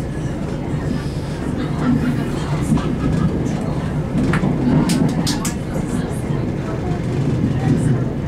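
Steady low rumble inside a moving Class 171 Turbostar diesel multiple unit, from its underfloor diesel engines and wheels on the rails. There are a few sharp clicks and rattles about four to five and a half seconds in.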